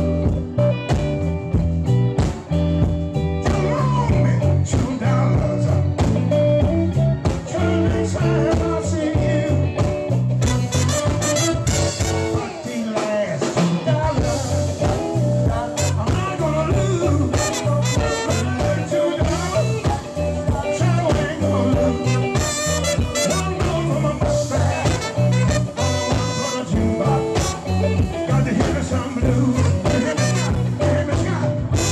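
Live blues and soul band playing at a steady beat: a horn section of trumpet and saxophones over electric guitar, keyboard and drums, with a singer.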